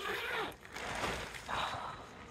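Marquee side-wall fabric rustling in three bursts as the door flaps are pushed apart.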